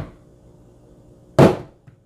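A stainless portafilter knocked once, hard, against a Breville knock box to empty out spent tea leaves, about a second and a half in, with a short ringing decay, then a light tap shortly after.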